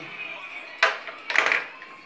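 A cat's paw knocking a small ball around a plastic toy pool table. There is a sharp clack a little under a second in, then a short clattering burst about half a second later.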